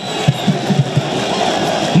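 Football stadium crowd noise, a steady wash of cheering right after the home side's goal.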